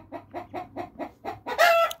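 Broody hen clucking in a quick, even series of short clucks, about six a second, then one louder, higher-pitched call near the end.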